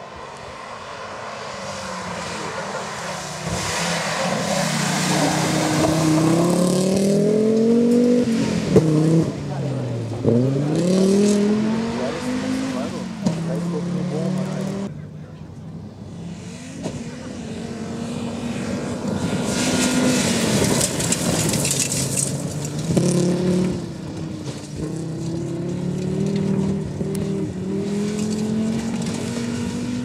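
Rally car engines at high revs on a gravel stage, the pitch climbing and then dropping sharply again and again with gear changes and lifts as the cars pass. In the second half the car is an Audi quattro rally car.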